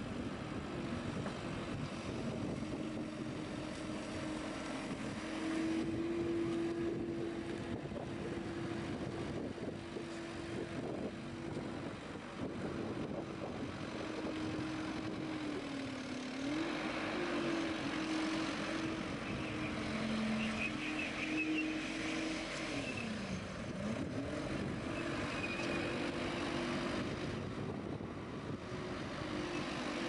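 Skid steer loader's engine and hydrostatic drive running steadily while the machine drives, turns and works its bucket. The engine note dips in pitch and recovers twice, about halfway through and again a few seconds later.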